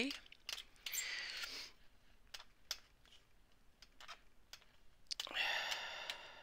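Thin clay blade chopping polymer clay into small chips: light irregular clicks as the blade strikes the work surface. A short breathy noise comes about a second in, and another near the end.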